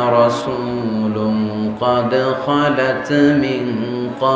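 A man's voice chanting in long, held, melodic phrases over loudspeaker microphones, the sung delivery of a Bengali Islamic sermon (waz).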